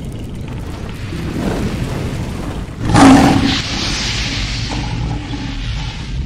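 Cinematic logo-intro sound effects: a deep rumble builds to a loud boom about three seconds in, followed by a hissing, rumbling tail that fades.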